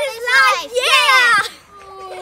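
Children's voices: two loud, high-pitched shouted words in the first second and a half, then a quieter held steady tone.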